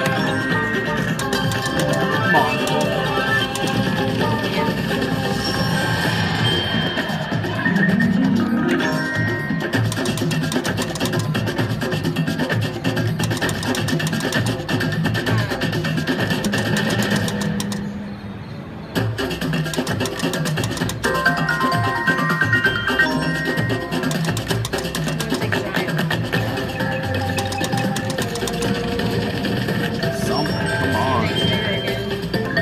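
Slot machine bonus-round music and spin jingles playing without a break through a run of free spins, with a short drop in level about two-thirds of the way through.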